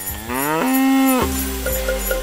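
A cow mooing once: the call rises in pitch, holds for about half a second, then cuts off sharply. Music with light chimes comes in right after.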